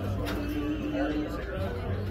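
Indistinct chatter of people in a pool hall with background music, with one held note lasting about a second early on.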